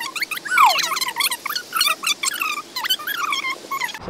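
Small birds twittering: many quick overlapping chirps and short sliding whistles, one of them a longer falling whistle about half a second in.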